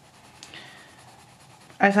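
Coloured pencil scratching lightly across paper as it shades in an area of a colouring page, a faint, uneven hiss.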